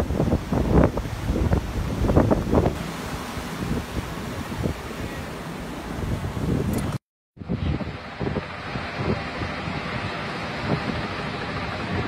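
Wind buffeting the microphone over surf washing in on the beach, with loud gusts in the first few seconds. The audio drops out briefly about seven seconds in, then resumes with steadier wind and surf.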